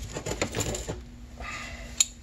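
A quick flurry of light metallic clicks and rattles, the handling of small metal parts, followed by a few softer clicks about a second and a half in, over a faint steady hum.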